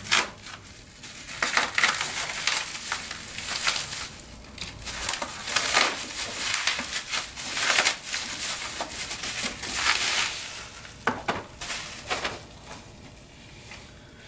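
Plastic packing wrap crinkling and crackling in irregular bursts as it is pulled and torn off a small package by hand. There are a couple of sharper clacks about eleven seconds in, and the handling is quieter near the end.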